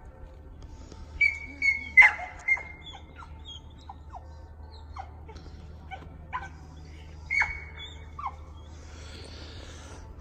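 A dog barking in short bursts, a cluster of four about a second in and one more past the seven-second mark, with small birds chirping.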